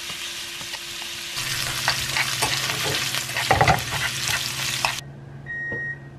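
Smoked duck slices sizzling in a frying pan as metal chopsticks stir them, with clicks and scrapes of the chopsticks against the pan. The sizzle grows louder about a second in and cuts off suddenly about a second before the end, followed by a short high beep.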